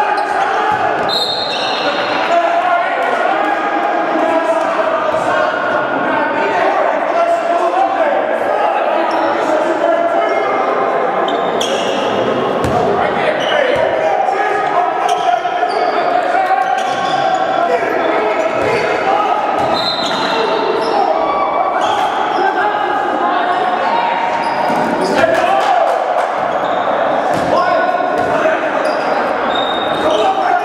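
Basketball game on a hardwood gym floor: the ball dribbling and bouncing, with short high sneaker squeaks and players' and spectators' voices. Everything echoes in the hall.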